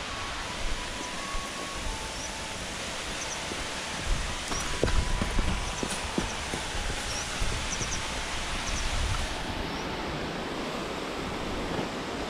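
Footsteps going down earth-and-stone steps, a scatter of scuffs and knocks mostly in the middle, over a steady rush of water from the waterfall and pond.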